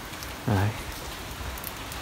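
Steady heavy rain: an even hiss with scattered drop ticks. A brief voice sound comes about half a second in.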